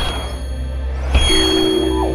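Logo-reveal sound effects in a short music sting: a sharp impact about a second in, followed by high metallic ringing over a sustained deep bass.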